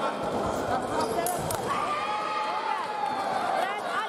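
Busy fencing hall: thuds of footwork and brief shoe squeaks on the piste, with voices around.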